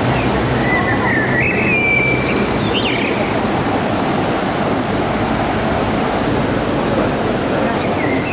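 A steady, loud rushing noise, with a small bird chirping and trilling in the first few seconds.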